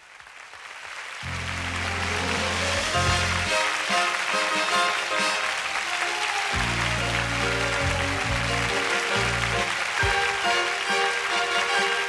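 Studio audience applauding over an orchestra playing the introduction to a copla, with sustained low bass notes under it. The applause swells in over the first couple of seconds.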